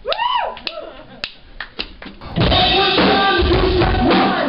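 A short whoop, then a few sharp drumstick clicks, and a live rock band comes in loud about two and a half seconds in, with drums and cymbals.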